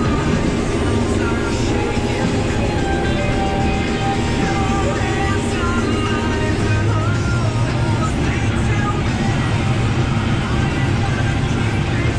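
Music with a wavering melodic line, likely vocals, laid over the steady low running of a combine harvester heard from inside its cab.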